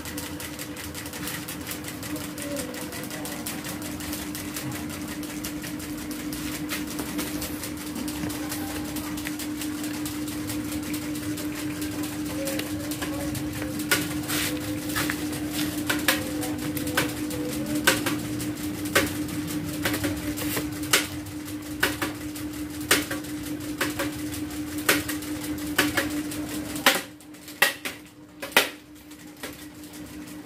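Several small plastic-bladed mini ceiling fans running: a steady motor hum with sharp clicks, scattered at first and then about once a second. Near the end the hum cuts out and the level falls, leaving a few clicks.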